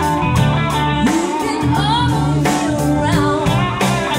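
Live band playing: a woman singing lead, with electric guitar, bass guitar, keyboards and drum kit.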